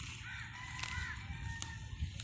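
A bird calling: two short arched calls about a second apart, with a longer held higher note between and after them, over a steady low rumble.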